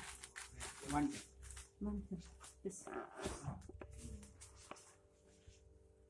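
Indistinct speech in a small room for the first few seconds, with a few light clicks and handling noises, then quieter room sound under a faint steady hum.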